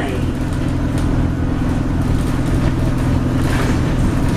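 Steady drone of an Alexander Dennis Enviro200 bus's engine heard from inside the passenger cabin while under way, with road noise and cabin rattles over it.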